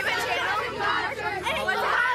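Several young voices talking over one another at once, an unintelligible chatter of a small group.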